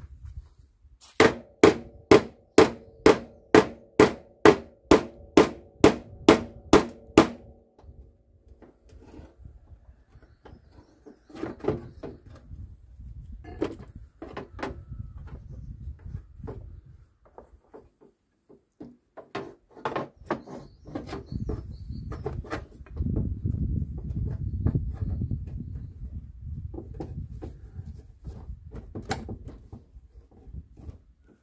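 Hammer tapping the steel front fender of a Volvo V70 to work a kink out of the sheet metal: about fourteen quick ringing metal strikes, a bit over two a second, in the first seven seconds. Later, a few scattered knocks over a low rumble.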